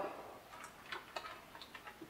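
Faint, scattered crinkles and clicks of a plastic candy bag being picked up and handled.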